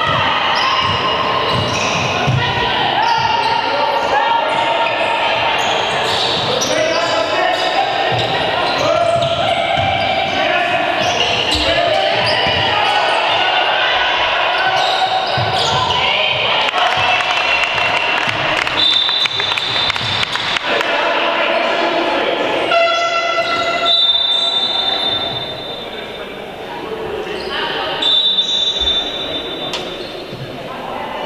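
Basketball game in a hall: the ball bouncing on the wooden court and players' voices calling out. In the second half a referee's whistle sounds several times, and there is a short horn-like buzzer.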